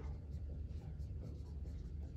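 Dry-erase marker writing on a whiteboard in short strokes, over a steady low room hum.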